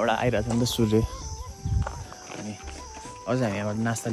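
A man's voice in short bursts over quiet background flute music, a slow melody of held notes that step up and down.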